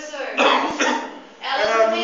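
Speech: a lecturer talking animatedly to a class, with a sudden loud burst about half a second in.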